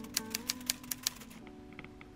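Typewriter key clicks, a quick run of about six a second that stops about one and a half seconds in, laid over soft background music that is fading out.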